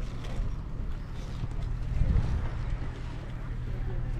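Wind buffeting the microphone as a low, uneven rumble, swelling about halfway through, with faint voices behind it.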